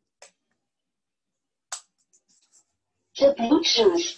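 Dead quiet broken by two short, faint clicks about a second and a half apart, then a woman's voice begins near the end.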